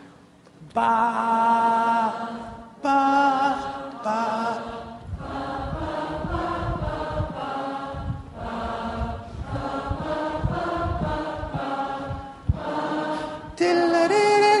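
A large audience singing held notes together, stepping between the pitches of a pentatonic scale as a man hops across the stage to cue each one. After a short pause at the start, the notes change about once a second, with low thuds from his jumps beneath them.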